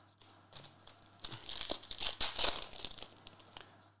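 Crinkling and rustling from trading cards and foil pack wrappers being handled, with many small clicks. It is faint at first and loudest in the middle couple of seconds.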